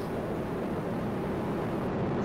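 Steady rumble of Space Shuttle Endeavour's solid rocket boosters and three main engines during ascent, about 32 seconds into the flight.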